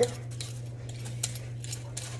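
Kitchen knife slicing an ingredient thinly on a cutting board: a string of light, irregular clicks of the blade against the board, over a steady low hum.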